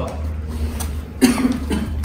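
A single short, sudden cough-like sound a little past halfway, over a steady low hum.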